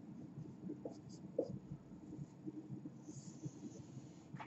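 Marker pen on a whiteboard: a series of faint, short scratching strokes as letters and a line are written, with a slightly longer scratch about three seconds in.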